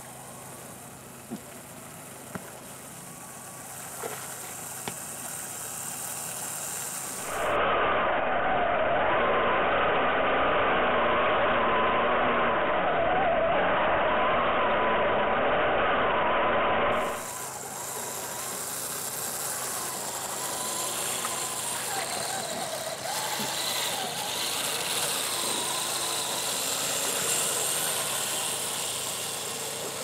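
Radio-controlled 1:14 scale Tatra 130 model truck driving over sand, its motor and gears whining with a pitch that rises and falls with the throttle. For a stretch in the middle it is much louder and closer, heard from a camera mounted on the truck itself.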